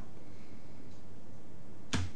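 Steady hiss of the recording's background noise, then a single short, sharp thump near the end.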